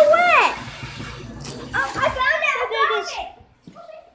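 Children's voices talking and calling out, in two bursts about a second apart, dying away near the end.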